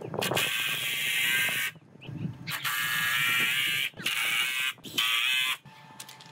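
Cordless driver driving screws into wooden boards: three runs of the motor, the last one shorter, with brief pauses between.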